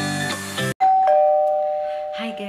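Music ends abruptly, then a two-note ding-dong chime sounds: a high note, then a lower one, both left ringing.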